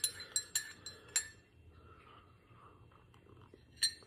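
Metal spoon clinking against a ceramic coffee mug as the coffee is stirred: a quick run of ringing clinks in the first second or so. More clinks come near the end.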